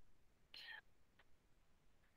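Near silence over a headset microphone, broken by one faint short breath about half a second in and a tiny click a little later.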